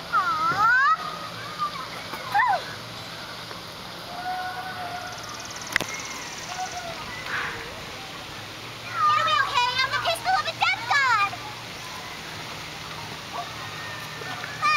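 Voices and calls in the background over a steady hiss, loudest from about nine to eleven seconds in, with a single sharp click near the middle.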